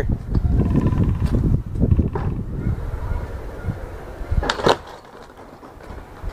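Skateboard wheels rolling over concrete, a low rumble that fades after about three seconds, then a sharp clack about four and a half seconds in.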